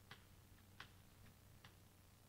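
Faint, sharp ticks of chalk tapping on a blackboard while writing, about five in two seconds, the clearest a little under a second in.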